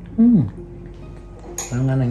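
A man's two short wordless vocal sounds, a falling 'oh' just after the start and a held low 'mm' near the end, over background music. A light metal spoon clink comes just before the second sound.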